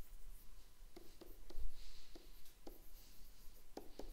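Stylus writing on a tablet screen: a string of light taps and faint scratches as words are handwritten.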